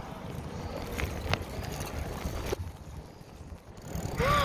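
Wind and road rumble on a phone microphone carried on a moving bicycle, with a few sharp clicks about one and two and a half seconds in.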